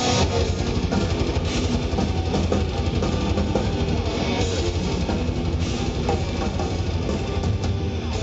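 Death metal band playing live: distorted electric guitars and bass over fast, dense drumming, heard through the stage speakers from the audience.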